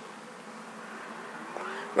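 A faint steady buzzing hum over background hiss, with a faint tone that rises slowly in pitch in the second half.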